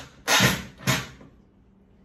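Corded drill driving a screw into MDF in two short bursts about half a second apart, pushing the screw head flush with the surface in a hole that was not countersunk.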